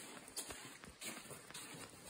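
Faint footsteps walking across a carpeted floor, a soft step roughly every half second.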